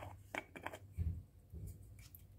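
Metal screw lid being taken off a glass spice jar: a few light clicks and scrapes, then a soft thump about a second in.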